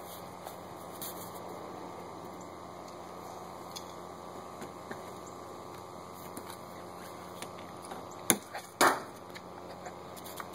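Two sharp knocks about half a second apart near the end, over a steady hiss with scattered faint clicks.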